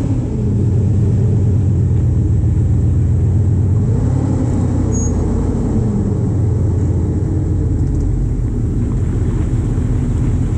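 Stretched 1977 Jeep CJ7's all-aluminum 5.3 LS V8 running steadily at low revs, with small rises and falls in pitch as the throttle shifts.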